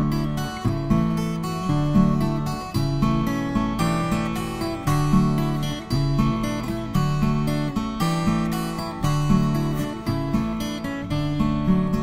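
Acoustic guitar playing an instrumental folk interlude: plucked notes and chords in a steady rhythm over sustained bass notes, with no voice.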